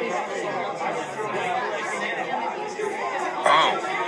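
A steady babble of many people talking at once: crowd chatter in a busy indoor space.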